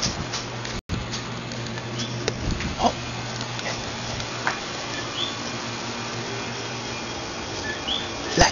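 Night-time chirping from small calling animals: a few short, high chirps sliding upward, twice in the latter half, over a steady low hum. Scattered light knocks and rustles of a handheld camera moving through garden foliage run alongside.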